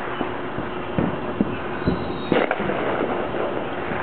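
Neighbourhood fireworks going off at a distance: irregular pops and crackles, the loudest bang about two and a half seconds in.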